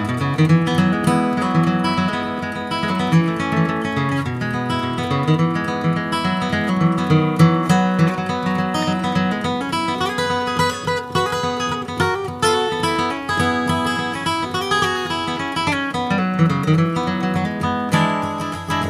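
Solo acoustic guitar playing an instrumental break in a country-folk song, with quick runs of picked notes mixed with strummed chords.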